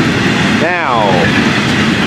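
Freight train cars (auto racks and intermodal well cars) rolling past in a steady rumble of wheels on rail, mixed with falling rain.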